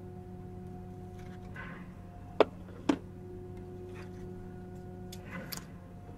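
Trading cards and pack wrappers being handled: soft rustles and two sharp clicks about half a second apart, over a steady low hum.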